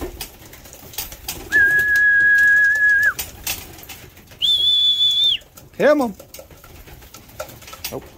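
A person whistling two long, steady notes, the second higher and shorter than the first, to call racing pigeons in to the loft.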